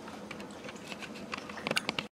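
Light clicks and crackles from crisp fried wontons being picked out of a paper-towel-lined steel bowl, with a quick run of sharper clicks near the end.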